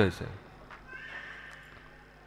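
A man's spoken word ends, then a faint, drawn-out animal call sounds in the background about a second in.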